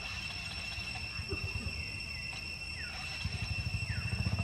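Insects buzzing steadily at a high pitch in tropical forest, over a low, rapid throbbing that grows louder near the end.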